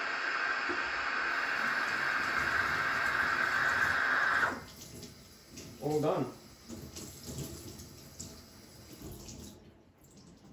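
Breville Oracle Touch's steam wand automatically frothing milk in a stainless jug: a steady hiss that cuts off suddenly about four and a half seconds in, as the automatic frothing stops at its set temperature. A short low sound follows about a second and a half later.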